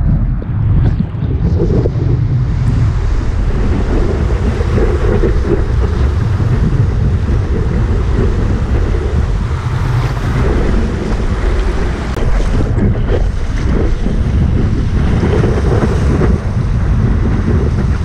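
Steady wind rumble on the microphone mixed with the rush of breaking surf and whitewater around a surfboard as it rides a wave.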